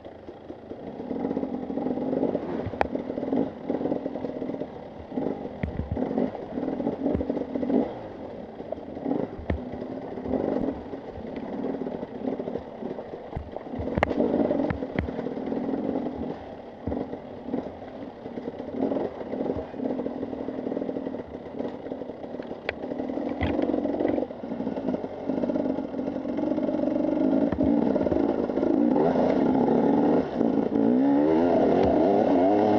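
Husqvarna TE 300 enduro motorcycle engine running at low revs as it picks its way over loose rock, with many sharp clattering knocks from the bike and stones. Near the end the engine gets louder and steadier as the ground turns to smooth dirt.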